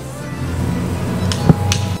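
Background music with a low steady beat, and a single sharp knock on a wooden door about one and a half seconds in, with lighter clicks just around it.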